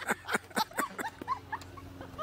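A person giggling in short, high-pitched breathy bursts that grow weaker and fade out.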